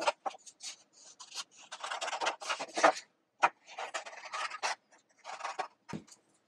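Scissors cutting out shapes from sheets of printer paper: a run of irregular snips and paper rustles.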